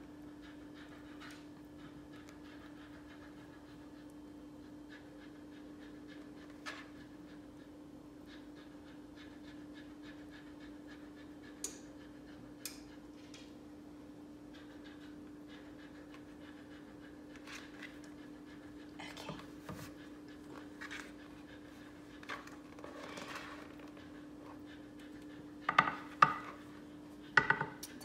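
Brownie batter being scraped out of a mixing bowl into a glass baking dish: soft scraping and occasional clicks of the spatula against the bowl over a steady low hum. A few sharp knocks of utensil on bowl or dish near the end are the loudest sounds.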